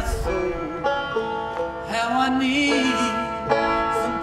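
Deering Boston five-string banjo being picked, a quick run of bright plucked notes.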